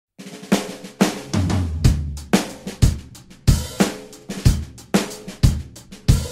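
Song intro led by a drum kit: a steady beat of kick, snare and cymbal hits, about two a second, with a low bass note under the first few hits.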